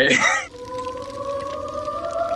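A long, steady held musical tone, one pitch with an overtone, starting about half a second in after a short burst of voice and stepping slightly higher about a second in.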